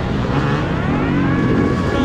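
Two-stroke KTM 250 EXC enduro bike engine revving under acceleration, its pitch rising about half a second in and then holding, with other dirt bikes running close by.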